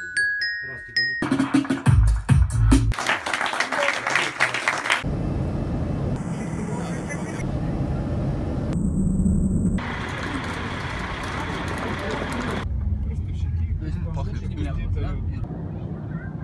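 A few glockenspiel notes, struck with mallets and stepping upward, cut off about a second in. After some scattered knocks, a steady airliner cabin drone runs for about eight seconds, then gives way to a quieter background.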